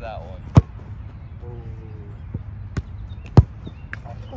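Two sharp thuds of a football being struck, about three seconds apart, the second the louder, with a softer knock shortly before it.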